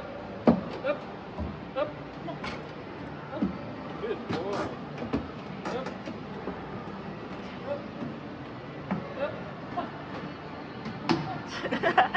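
Irregular footsteps and knocks on wooden stairs as a person and a leashed puppy climb, over faint background chatter of voices.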